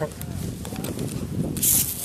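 Champagne spraying from a bottle: a sudden hiss starts about a second and a half in and keeps going, after low rumbling handling noise.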